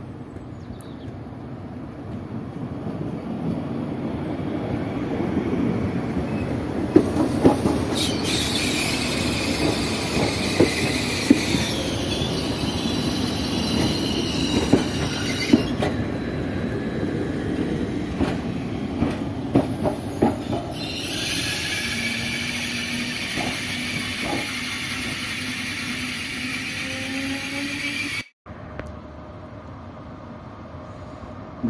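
Electric TER regional train running in along the platform: a rumble of wheels on rail that builds up, sharp clicks of wheels over rail joints, and high-pitched wheel squeal. The sound cuts off abruptly near the end.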